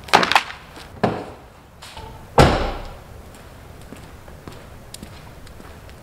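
A sharp slap at the start, a smaller knock about a second in, then a heavy slam about two and a half seconds in, followed by faint ticks and shuffling, as old rubber car floor mats are dropped and handled.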